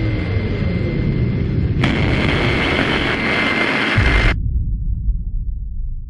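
Sound effect for a logo sting: a loud, explosion-like low rumble. A bright hissing rush joins it about two seconds in and cuts off abruptly after about four seconds, then the rumble dies away.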